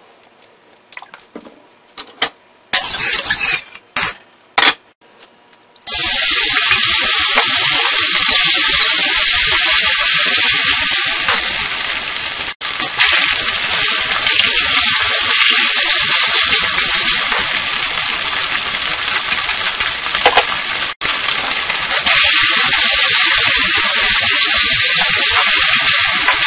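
Chicken pieces sizzling loudly and steadily in hot oil in a wok as they are stir-fried with a metal spatula, starting about six seconds in after a few short sizzles as oil hits the hot pan.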